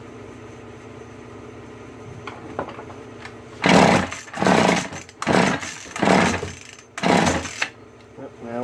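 Five pulls on the recoil starter of a McCulloch Mac 110 two-stroke chainsaw, each a loud rasp of about half a second, starting about three and a half seconds in. The engine turns over but does not fire.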